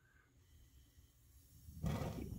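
Near silence, then near the end a short soft whoosh as the RV propane oven's main burner lights off its pilot flame once the thermostat is turned up.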